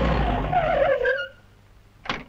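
A car braking to a stop, its tyres squealing with a wavering pitch; the squeal cuts off a little over a second in.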